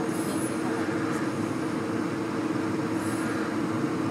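A steady low mechanical hum, even in level throughout, with faint high chirps briefly near the start and again about three seconds in.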